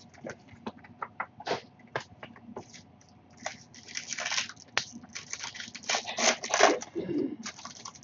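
A trading card pack's wrapper being handled and torn open: scattered crackles at first, then a run of dense crinkling and tearing from a few seconds in until near the end.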